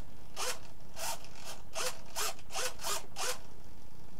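An RC servo driving a model airplane's elevator in about seven quick, short whirring buzzes, each a brief whine. With negative expo set, the servo snaps most of the way through its travel at the slightest stick movement, so each move is fast and abrupt.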